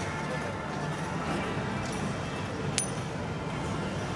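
A tossed coin landing on the hard court with a single sharp metallic clink about three seconds in, over low talk and open-air ambience.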